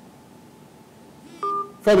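A short electronic telephone-line beep, about a third of a second long, about one and a half seconds in, on a phone-in call that is not connecting. A man's voice starts just before the end.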